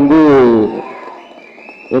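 A man speaking into a handheld microphone: a drawn-out hesitation syllable that falls in pitch, then a pause of about a second with only room noise before he goes on speaking near the end.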